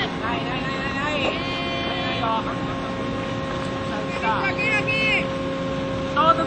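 Voices shouting and calling out across the field, with drawn-out cries about a second in and again around four to five seconds in, over a steady hum and outdoor background noise.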